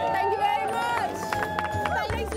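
A group of people talking and calling out over one another, many excited voices overlapping, with scattered sharp clicks.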